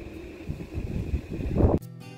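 Wind buffeting the microphone in uneven gusts, then background music cuts in abruptly near the end.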